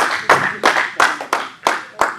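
A congregation clapping in a steady rhythm, about three claps a second, acclaiming Jesus in worship at the preacher's call.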